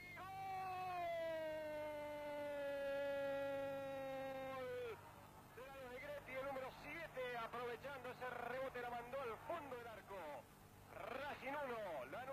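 A man's long drawn-out shout, held for about five seconds with its pitch slowly sinking, typical of a football commentator's goal cry. It is followed by fast commentary speech.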